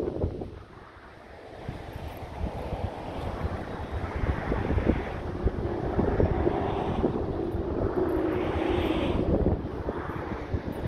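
Wind buffeting the microphone, a rumbling rush that dips about a second in and then builds up again. A faint steady drone sits underneath in the second half.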